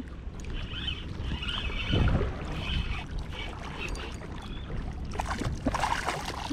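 Spinning fishing reel being wound in against a hooked mangrove snapper, a patchy whirring over steady wind noise on the microphone. Near the end the fish splashes at the surface.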